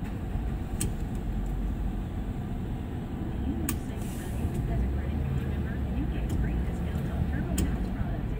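Steady low rumble of car traffic and engines, with four sharp clicks spread through it.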